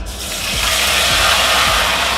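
Hot oil sizzling in a kadai, starting suddenly and then holding steady.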